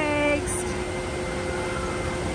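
Steady rush of water from a park water ride's slide and waterfall, with a faint steady machine hum under it; a voice trails off in the first half-second.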